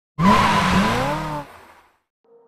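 A sports car drifting: tyres squealing while the engine's pitch rises and falls. It starts abruptly, drops away after about a second and a half, and fades out.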